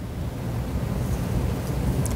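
A steady low rumble with no words, sitting deep in the bass and growing slightly louder.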